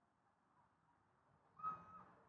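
Near silence, broken near the end by one short, steady whistle-like tone lasting under half a second.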